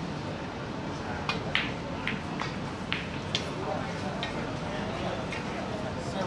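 Snooker shot being played: the cue tip strikes the cue ball and the balls click against each other. There is a quick series of sharp clicks between about one and three and a half seconds in, then a couple of fainter ones, over a low murmur of voices.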